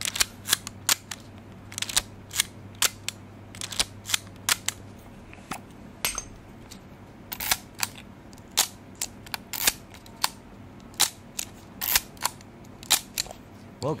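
Mechanical shutters of a Leica MP and a Voigtländer R3M rangefinder film camera being fired again and again, a crisp click about twice a second in uneven runs.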